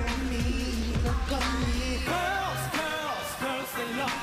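K-pop dance track with male singing over a synth backing. About halfway through, the bass and beat drop out, leaving the voices and synths.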